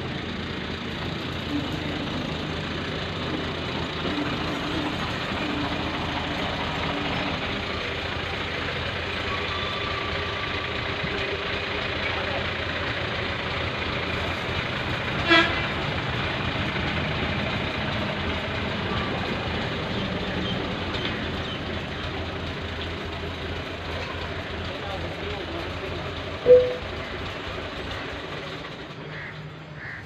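New Holland tractor's diesel engine running steadily, with a fast even pulse under it. Two brief pitched chirps break in, one about halfway and a louder one near the end.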